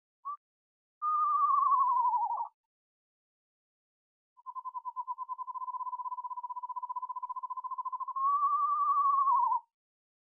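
Recording of an eastern screech owl: a descending whinny that lasts about a second and a half, then a long quavering trill held at about one pitch, lifting slightly near the end before it stops.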